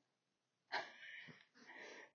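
A short breathy exhale from a woman, a bit under a second in, followed by faint breath sounds; otherwise near silence.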